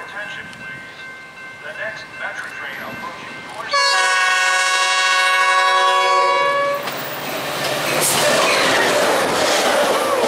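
Metra commuter train's locomotive air horn sounding one long chord of about three seconds, a few seconds in. As the horn stops, the train's rumble and wheel clatter swell as it runs past close by.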